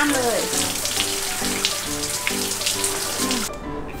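Garden hose spray nozzle spraying water onto hanging fern foliage, a steady hiss that cuts off suddenly near the end. Light background music with short repeated notes plays along.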